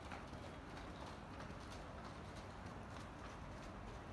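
Footsteps on a paved street at a steady walking pace, about two steps a second, over a faint low city rumble.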